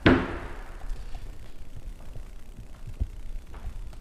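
A kitchen cupboard door being shut, one sharp bang right at the start with a short ringing decay, followed by faint low thuds of handling and movement.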